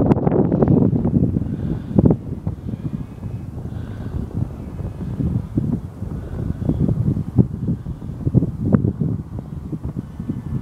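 Wind buffeting the microphone in uneven gusts, heaviest in the first second, with a faint thin distant whine now and then underneath.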